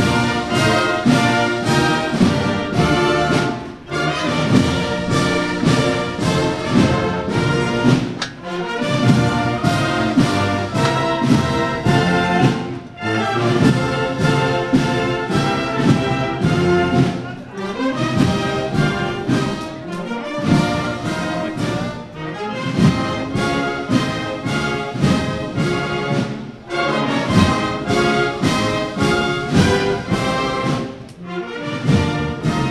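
Brass band playing a processional march, in full phrases separated by brief breaths.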